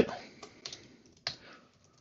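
A handful of separate keystrokes on a computer keyboard, spaced out as a line of code is typed.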